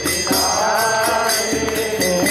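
Group kirtan: many voices chanting a devotional mantra together, with percussion keeping a steady, even beat.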